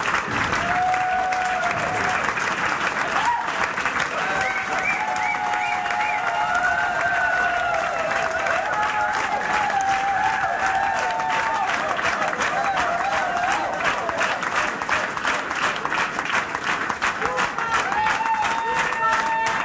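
Concert audience applauding steadily, with voices calling out and cheering over the clapping for most of it.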